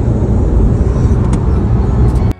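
Steady, loud road and engine rumble inside the cabin of a car driving at motorway speed.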